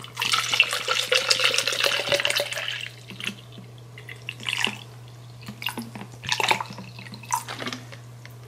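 Water poured from a plastic bottle into a plastic shaker cup: a steady pour for about three seconds, then several short separate glugs and splashes as the flow breaks up.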